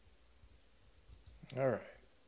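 Quiet room tone with a few faint clicks, then a man's voice saying "All right" near the end.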